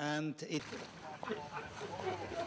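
A voice for about half a second, then a busy room background with indistinct voices.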